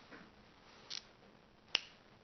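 A single sharp click near the end, such as a finger snap or a marker being clicked, preceded by a faint short hiss about a second in, against quiet room tone.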